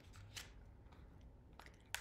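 Faint rustle and a few soft clicks of a picture book's paper pages being turned by hand, over quiet room tone.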